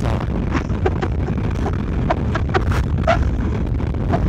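Wind rushing over the microphone on a moving motorcycle, over the steady low rumble of the engine and tyres, with a few short faint sounds above it.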